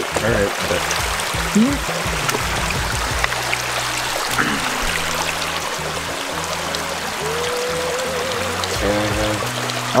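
Creek water running, with water pouring and trickling out of a plastic-bottle minnow trap as it is lifted from the creek, over steady background music.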